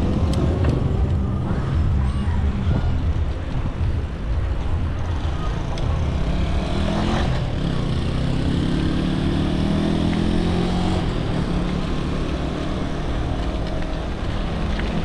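Wind and road rumble on a GoPro's microphone as a mountain bike rolls along asphalt, with a motorcycle engine running close ahead, its hum rising a little in pitch from about seven seconds in to eleven.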